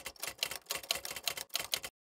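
Typewriter keystroke sound effect: a quick run of sharp key clacks, about seven a second, typing out a title, stopping shortly before the end.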